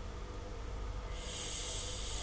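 A person breathing out noisily through the nose close to the microphone, a hissing breath that starts about a second in, over a low steady electrical hum.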